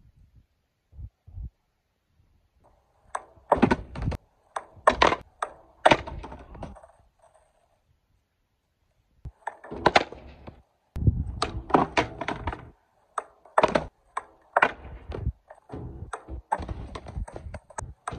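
Skateboard clacking on concrete and a ledge: a string of sharp pops, slaps and landings of the board and wheels, with short stretches of rolling between hits. The hits come in two bunches, with a silent gap of a second or two about halfway through.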